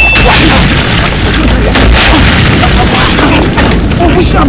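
A loud, harsh fight scuffle: men shouting and straining as they grapple, over a dense run of thuds and knocks.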